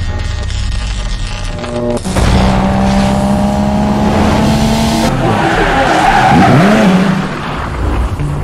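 Produced car sound effects: an engine note held steady for about three seconds, then tyres squealing with a pitch that swoops up and down.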